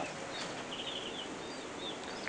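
Canaries in their breeding cages giving faint chirps and twitters over a steady low hiss.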